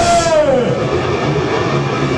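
Live rock band with the drums dropped out: a long held note slides down in pitch about half a second in, leaving a low note ringing.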